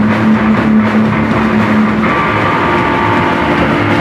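Loud distorted electric guitars held in a sustained, ringing drone from a live band. About halfway through, the held pitch changes to higher notes.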